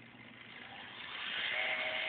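Small electric motor of an RC crane's main hook winch running, its whine growing louder and a steady tone coming in about one and a half seconds in.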